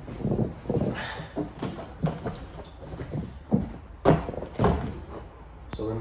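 A person in a cotton gi shifting and lying back on vinyl-covered mats while moving a plastic chair with metal legs: a run of irregular thumps, knocks and rustles. The sharpest knock comes about four seconds in.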